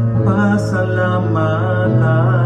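A man singing a Tagalog worship song into a handheld microphone, his voice wavering on held notes, over a steady low accompaniment note.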